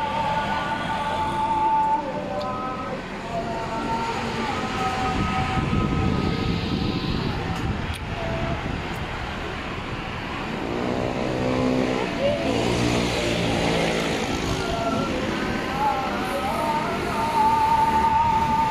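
Street traffic with motorbikes going by, one passing close with a rising and falling engine note about eleven to thirteen seconds in. A thin tune of held notes plays throughout.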